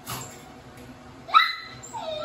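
Border collie puppy gives one sharp, high-pitched yip about a second and a half in, rising in pitch as it starts, after a brief scuffling noise at the start.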